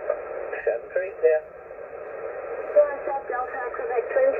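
Single-sideband voice received on a Yaesu FT-991A transceiver on the 40 m band: faint, unclear speech fragments in a narrow, tinny audio band, quieter than the stations around them, with a weaker stretch in the middle.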